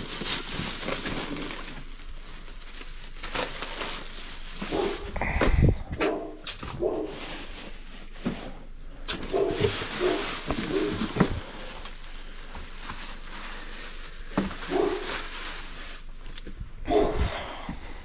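Plastic grocery bags crinkling and rustling as they are lifted out of an insulated delivery bag, while a dog barks at intervals.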